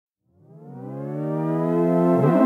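Intro music opening with a synthesizer tone that fades in from silence about a third of a second in, glides up in pitch and then holds steady.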